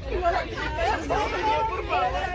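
Several people talking and chattering over one another, no single voice clear, with a steady low rumble underneath.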